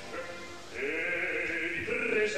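An operatic voice singing Italian recitative. It is faint at first and grows louder and fuller about two-thirds of a second in.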